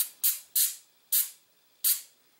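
Aerosol can of moly (molybdenum disulfide) dry lubricant sprayed onto a pistol slide in five short hissing bursts, each starting sharply and tailing off quickly.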